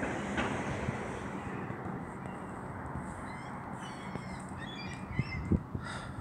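Birds calling outdoors, a series of short repeated calls starting about halfway in, over a steady background noise. A couple of brief low thumps near the end.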